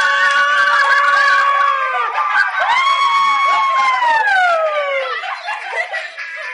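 Girls screaming in celebration: two long high-pitched screams, the second sliding down in pitch, breaking into laughter near the end.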